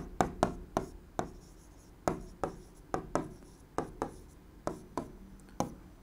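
A stylus tapping and scraping on an interactive display screen during handwriting: a run of short, irregular clicks.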